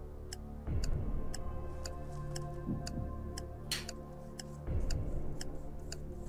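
Quiz-show countdown clock ticking about twice a second over background music with a low pulse every couple of seconds, as the answer timer runs down.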